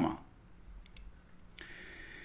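A quiet pause with a few faint, short clicks about a second in and another click about a second and a half in.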